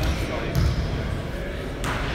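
Basketballs bouncing on a hardwood gym floor, with a sharper knock near the end, over background chatter.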